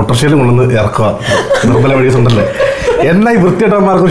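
People talking and chuckling, with speech broken by short laughs.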